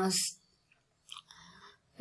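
A woman's voice finishes a word, then a pause with faint mouth noise: a small click about a second in and a brief soft breath-like rush just before she speaks again.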